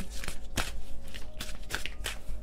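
A deck of cards being shuffled by hand: a quick, irregular run of soft clicks and flicks, one sharper snap about half a second in.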